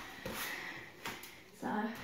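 Soft movement noise on a gymnastics mat with a single light knock about a second in, then a brief vocal sound near the end.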